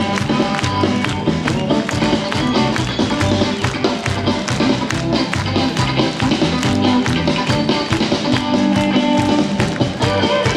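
Live band playing at full volume: electric guitar, electric bass and a drum kit keeping a steady beat.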